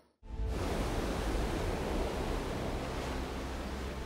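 A steady rushing noise with faint background music underneath, starting right after a brief dropout to silence.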